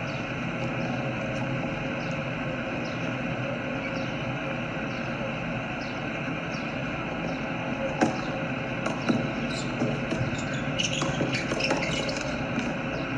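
Tennis ball struck by rackets: a sharp serve hit about eight seconds in, followed by several more quick hits in a short rally, over steady background noise.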